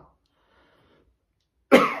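A man coughs once into his hand near the end, a sudden short burst after a quiet pause.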